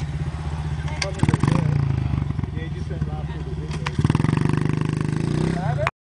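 A small dirt bike's single-cylinder engine idling steadily, revved up briefly twice, about a second in and again about four seconds in. The sound cuts off suddenly near the end.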